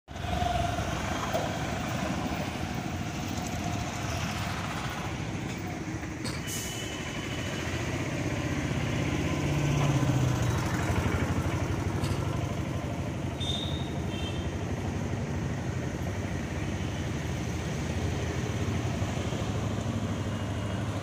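Road traffic on a town street: a steady rumble of motorbikes, scooters and auto-rickshaws, swelling louder around the middle. A couple of brief high tones sound about a third and two-thirds of the way through.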